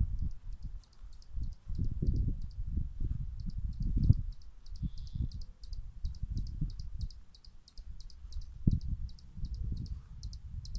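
A gusty low rumble of wind buffeting the microphone, loudest around 2 and 4 seconds in. Behind it a small creature keeps up a rapid, even, high chirping, about three or four chirps a second.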